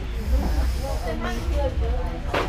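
Indistinct voices talking, over a steady low rumble and hiss.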